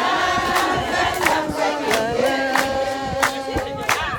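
A large group of women singing together in unison, a call-and-response style chorus, with sharp beats keeping time about three times a second.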